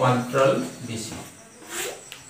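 Chalk scratching on a blackboard in short strokes as letters are written and underlined, with a man's voice briefly at the start.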